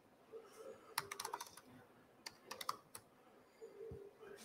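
Faint laptop keyboard typing: a quick run of keystrokes about a second in, then a few more clicks between two and three seconds in.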